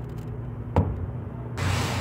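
A steady low hum with a single light knock about a second in, a metal spoon against the plastic cup of syrup, followed near the end by rustling as a piping bag is picked up.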